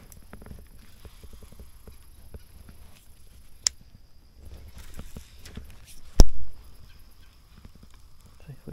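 Fishing gear being handled in a plastic sit-on-top kayak: scattered small clicks and taps, a sharp click about halfway through, and one loud knock about six seconds in.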